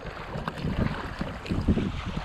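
Wind buffeting the microphone in gusts over choppy sea, with water sloshing around a kayak, swelling louder near the end.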